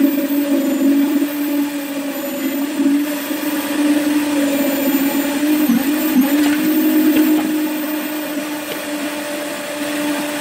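Concrete needle vibrator running with a steady hum, its pitch dipping briefly twice near the middle as the poker is worked in the fresh concrete inside the steel column formwork.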